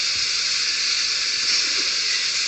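A steady high hiss of background noise in the recording, with no speech over it.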